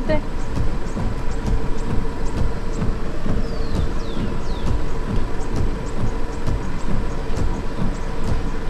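Ambience recorded inside a parked car: a steady low rumble with a faint constant hum, and three short high falling chirps about halfway through.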